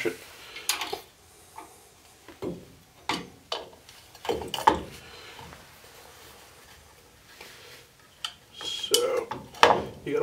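Steel drum brake shoe being handled and fitted against the brake backing plate: a series of separate metallic clinks and knocks, with a quieter stretch in the middle and more clinks near the end.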